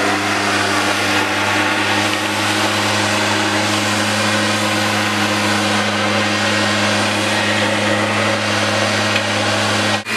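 Gas-powered backpack leaf blower running steadily at full throttle: a constant engine drone under a loud rush of air.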